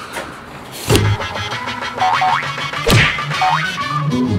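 Background music with two sharp impact hits, about a second in and just before three seconds, and short quick rising glides between and after them, like cartoon sound effects.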